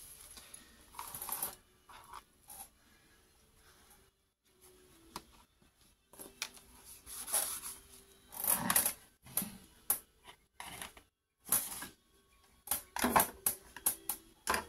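Craft supplies being picked up, moved and set down on a cutting mat: a scattered run of short clicks, taps and rustles, busiest in the second half.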